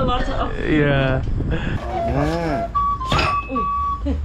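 Voices and laughter, then near the end a flute-like wind instrument starts up with one held high note.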